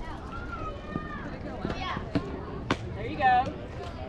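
Voices of players and spectators around a softball field, with a single sharp smack about two and a half seconds in and a loud shout right after it.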